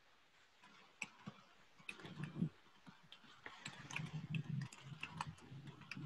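Faint, irregular clicks and ticks over a low hum that swells from about two seconds in.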